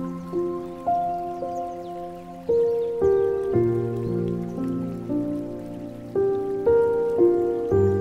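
Slow, gentle solo piano, single notes and soft chords struck about once a second and left to ring, over a faint trickle and patter of water.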